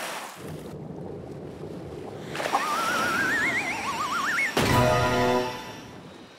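Cartoon sound effects over music as a robot shark breaks down: a watery rushing noise, then two rising, wobbling whistle tones, then a sudden loud, low buzz lasting about a second.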